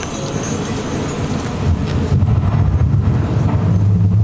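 Crowd murmur, then about two seconds in a deep low rumble from the light show's sound system swells up and holds, overtaking the crowd.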